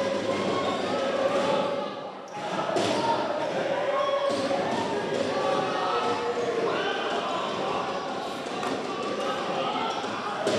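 Volleyball rally in an indoor sports hall: a few sharp hits of the ball, about two to four seconds in, over a continuous hubbub of crowd and player voices echoing in the hall.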